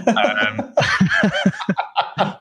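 Male laughter: a run of short chuckles.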